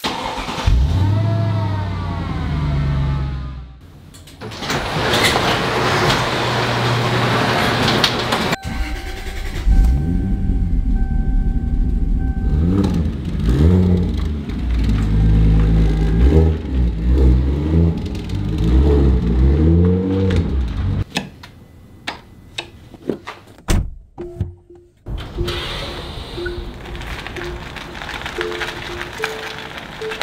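Car engines starting and revving over background music: a V8 fires up suddenly at the start, followed by repeated revs rising and falling in pitch. The engines belong to a Mercedes E55 AMG and a 1994 Toyota Supra. The engine sound stops about two-thirds of the way through, leaving the music.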